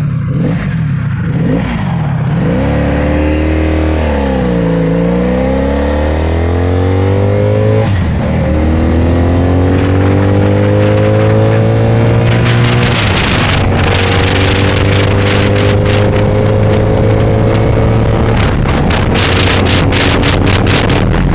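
1985 Honda Magna 700's V4 engine pulling away and accelerating, its pitch climbing through each gear and dropping back at upshifts about eight and thirteen seconds in. Wind buffets the microphone more and more as speed builds in the second half.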